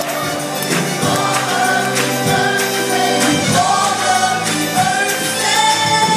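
A large gospel choir singing long held chords in full voice, with live accompaniment keeping time in regular percussive hits.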